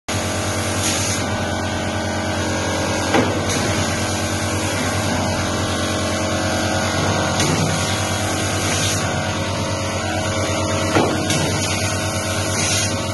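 High-speed buffing machine running steadily with a dense mechanical hum. Two brief knocks come through, about three seconds in and again near the end.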